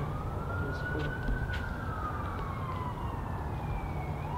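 Emergency siren wailing: one slow rise and fall in pitch, starting to rise again at the end, over a steady low rumble of outdoor background noise.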